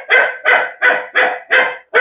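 A dog barking very loudly in a quick, steady series of about four barks a second.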